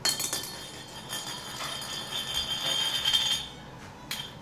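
Metal fruit-jar ring (canning jar band) clacking onto a tile floor and spinning on its edge. It makes a steady high metallic ringing rattle that grows louder and then stops suddenly about three and a half seconds in as the ring settles flat.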